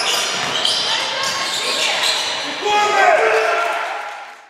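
Live sound of an indoor basketball game: a ball bouncing on the hardwood court and players' voices echoing around the gym. It grows louder about three seconds in.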